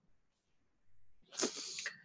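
A man's short, faint sniff or intake of breath through the nose, a half-second hiss about one and a half seconds in, in an otherwise near-silent pause.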